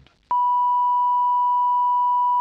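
Steady 1 kHz line-up test tone on the committee room's broadcast sound feed, starting about a third of a second in and holding one even pitch. It marks the sound channel as idle and being identified between repeated spoken idents.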